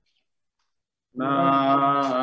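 A man's voice chanting a prayer, starting about a second in and holding one long, steady note after a silent pause.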